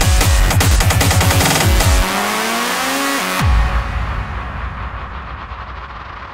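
Electronic dance music with a heavy, pounding bass beat. About two seconds in the beat drops out and rising synth sweeps build, ending in a deep boom about three and a half seconds in, after which the music thins out and fades with its highs cut.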